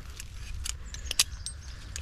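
A few sharp metallic clicks and light rattles of climbing hardware being handled: the pin of a HitchHikerXF rope-climbing device being slid partway out, with the attached connectors clinking.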